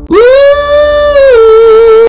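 A man's voice singing one high, sustained note in falsetto: it swoops up at the start, holds, then steps down to a slightly lower held note with a light waver.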